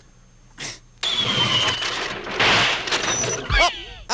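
Comedy sound effect of a steam-driven robot contraption being started: a noisy, hissing sputter lasting about two and a half seconds, with a thin falling whistle near its start, that fails to get the machine going.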